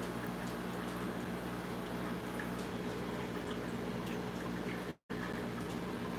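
Steady bubbling of an air-driven aquarium sponge filter over a low, steady hum. The sound drops out completely for a split second about five seconds in.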